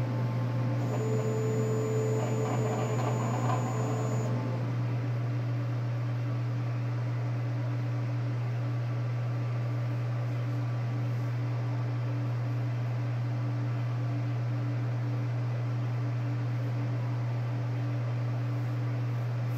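Steady low hum of a large-format inkjet printer's fans running while the print is stopped. A brief higher whir sits on top from about a second in to about four seconds.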